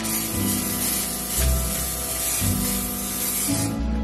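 Aerosol can of spray fixative hissing in one long continuous spray that stops shortly before the end, over background music.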